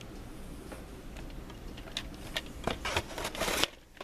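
Plastic VHS cassette and tape cases being handled: a run of clicks and knocks from about halfway in, building to a louder scraping rub that stops abruptly just before the end.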